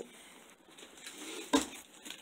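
A single sharp thump about one and a half seconds in: a wrapped gift box dropping onto a carpeted floor.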